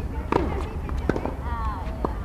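Tennis rally: rackets hitting the ball in sharp strikes. The loudest strike comes about a third of a second in and another about a second in.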